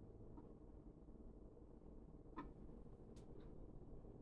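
Near silence: faint room tone with a few soft ticks, the clearest about halfway through and two more close together about a second later.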